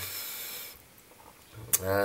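A short rasping, rubbing noise from hands handling the copper pipework and cloth. It stops just under a second in.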